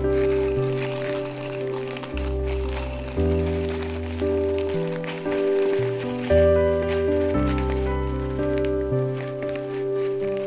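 Background music with a steady melody over the dry rattle of crunchy fried snack sticks being poured from a plastic bag into a plastic jar.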